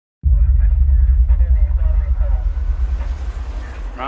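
A deep, loud rumble comes in suddenly just after the start and slowly fades, with faint, indistinct voices of people talking underneath.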